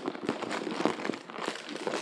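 Clear plastic bag crinkling and rustling as a hand rummages inside it, a busy run of irregular crackles.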